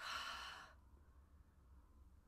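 A woman's breathy sigh, a single exhale lasting under a second.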